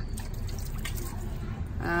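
Garden hose water trickling and dripping onto a plastic toy truck and the wet floor.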